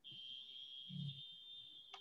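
A faint, steady, high-pitched electronic tone that starts suddenly and holds without changing, with a single sharp click near the end.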